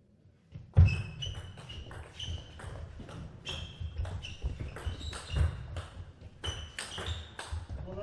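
A fast table tennis rally: the ball clicks off rubber bats and the table in quick succession, while shoe soles squeak on the court floor and footfalls thud as the players move. It starts about a second in, after a near-silent moment.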